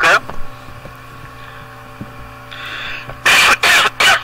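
Playback of a voice recording made on a computer microphone: a steady electrical hum runs under faint sounds, with two loud, short noisy bursts near the end.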